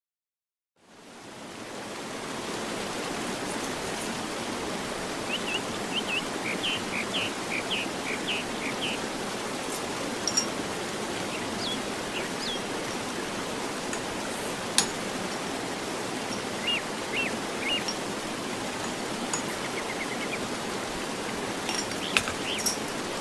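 Steady rushing water like a flowing stream, fading in over the first couple of seconds and then holding even, with short high chirps scattered over it in a few clusters and a few faint clicks.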